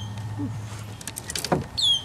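Small electric trolling motor humming steadily, then cutting off about a second in, followed by a single knock.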